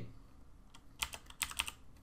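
Computer keyboard typing: a quick run of keystrokes starting about a second in, after a quiet moment.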